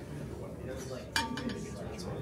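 Tableware being set down on a dining table, with one sharp clink and a brief ring about a second in, over low background chatter.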